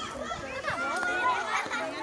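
A crowd of children talking and calling out at once, many high voices overlapping into a steady babble.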